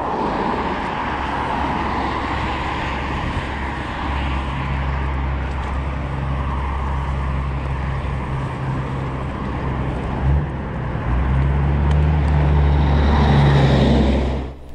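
Steady wind and rolling noise from an electric scooter riding over grass beside a road, with road traffic passing. A heavy truck's low engine hum builds over the last few seconds as it passes close by and becomes the loudest sound.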